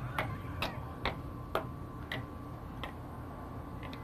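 Replica Price Is Right Showcase Showdown wheel slowing to a stop after a spin, its red pointer flapper clicking over the pegs. The clicks come further and further apart as the wheel loses speed, the last one near the end.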